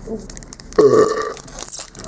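A man burps once, about a second in: a short belch from a gulp of beer. A foil trading-card pack wrapper crinkles faintly in his hands.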